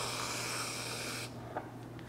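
Whipped cream hissing out of an aerosol can into a mug in one steady spray that cuts off about a second and a quarter in.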